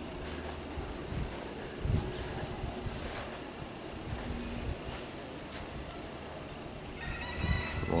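Outdoor garden ambience with a steady rush of wind on the microphone and a few soft handling knocks. A steady high-pitched sound sets in near the end.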